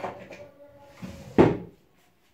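Handling knocks and clatter while a whiteboard marker is being refilled with ink. The loudest is a sharp knock about one and a half seconds in, and the sound cuts off just before the end.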